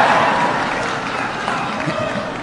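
Large audience laughing and clapping in response to a joke, the crowd noise slowly fading.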